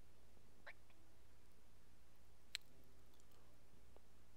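Faint handling clicks from a rubber timing belt being worked onto the toothed crankshaft sprocket of a VW 1.8 turbo engine: a soft click about a second in and one sharper click about two and a half seconds in, with a few light ticks after.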